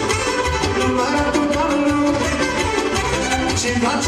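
A live band playing Romanian folk dance music: a melody over a steady, driving beat.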